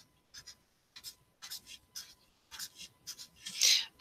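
Felt-tip permanent marker drawing short strokes on paper: about a dozen quick, quiet scratches, many in pairs, as small legs are drawn one after another. A longer, louder hiss comes near the end.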